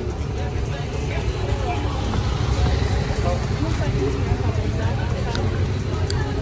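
Steady low rumble of a vehicle, with indistinct voices talking underneath.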